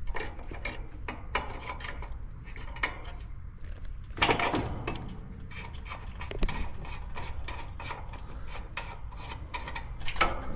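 Metal clicks and scraping of a wrench working on an outdoor air-conditioner condenser's service-valve fittings, many short ticks and rubs, with a brief louder rush of noise about four seconds in.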